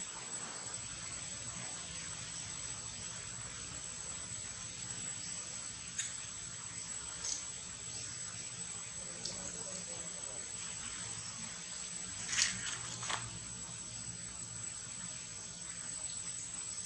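A steady, high-pitched drone of insects in forest ambience, with a few short sharp chirps and squeaks, the loudest two close together about twelve to thirteen seconds in.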